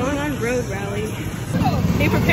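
Young voices talking indistinctly over a low, steady rumble.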